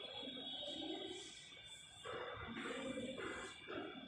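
Chalk scratching on a blackboard in short strokes as a curve is drawn, over a faint steady high whine and soft low background sound.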